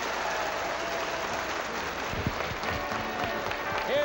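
A crowd applauding steadily at the close of a fiddle tune.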